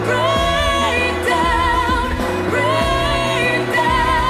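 A woman singing a pop song live with band backing, holding long notes with vibrato.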